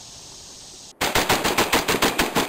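Faint steady background for about a second, then an abrupt cut to rapid automatic gunfire, about eight shots a second: a machine-gun sound effect.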